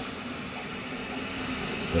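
FlashForge 3D printer running mid-print: a steady, even mechanical hum.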